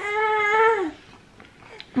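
A baby's drawn-out, high-pitched whining cry of about a second, held on one pitch and then dropping away. It is his demand for the water bottle that his mother is drinking from. A faint click follows near the end.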